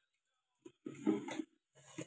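A person's voice, one short sound about half a second long near the middle, with little else around it.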